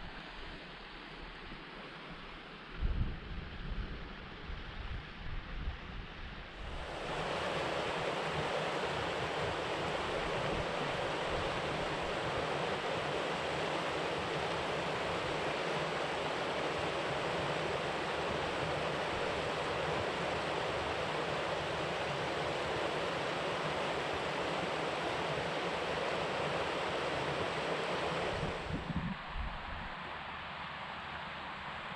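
Wind buffeting the microphone in uneven gusts. About seven seconds in, a steady, even rushing hiss cuts in abruptly and holds at one level until it cuts out shortly before the end.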